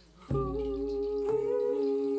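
Improvised ensemble music: after a near-silent moment, a steady humming held note sets in about a third of a second in, together with a low drum beat, and a second drum beat falls about a second later.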